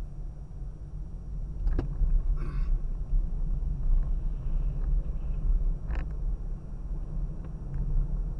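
Low, steady road and engine rumble of a car driving, heard from a dashcam inside the cabin, with a couple of sharp clicks or knocks, one about two seconds in and another near six seconds.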